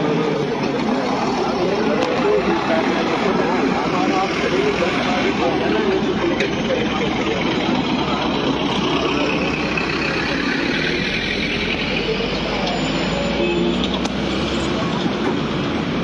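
Street noise of road traffic, with a truck going by close to the camera partway through, under people talking.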